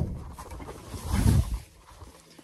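A low grunt of effort, swelling about a second in and fading half a second later, as a person gets down to kneel on the floor.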